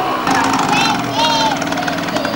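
A small motorcycle engine running steadily, with people's voices over it.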